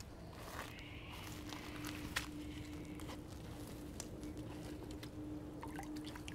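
Faint rustling and a few light clicks as someone moves through wet, boggy grass to the water's edge with a pond-dipping net, over a faint steady hum.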